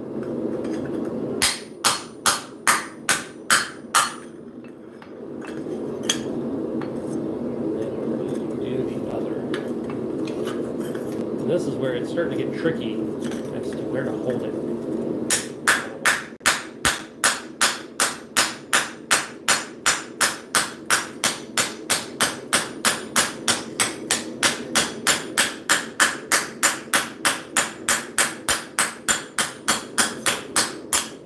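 Ball-peen hammer striking a steel sheet held in the round cup of a cast swage block, dishing it: a short run of blows a couple of seconds in, then a stretch of steady rushing noise, then a long, fast run of strikes at about three a second.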